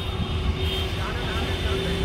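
Steady low rumble and hum of a running engine, with faint voices about a second in.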